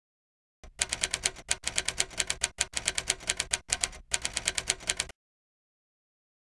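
Typewriter keystroke sound effect: a rapid run of sharp mechanical clicks, several a second, with a few brief pauses, starting just after half a second in and stopping suddenly about a second before the end.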